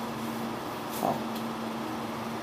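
Electric fan running with a steady hum.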